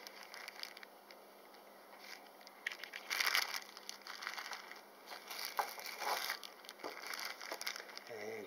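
Clear plastic specimen bags crinkling and rustling as they are handled, in irregular bursts, loudest about three seconds in.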